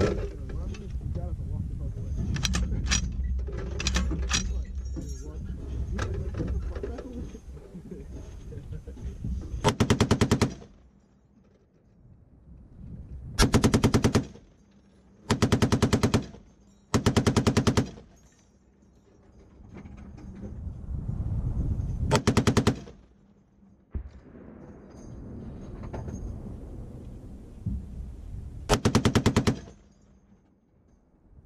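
Browning M2 .50-calibre heavy machine gun firing six short bursts, each lasting about half a second to a second, separated by pauses of one to six seconds.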